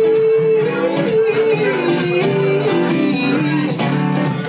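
Blueridge acoustic guitar strummed rhythmically, under a long wordless male sung note that slides slowly down in pitch and stops shortly before the end.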